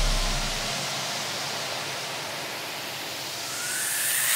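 A white-noise sweep in an electronic dance track: an even hiss that dips and then swells again, with a deep bass tail fading out in the first second and a faint rising tone near the end, building back toward the beat.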